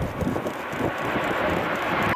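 Airplane sound effect: a steady jet-engine rush that cuts in and out abruptly.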